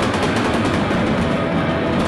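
Live rock band playing loudly: electric guitar over a drum kit struck in a rapid run of hits and cymbal crashes.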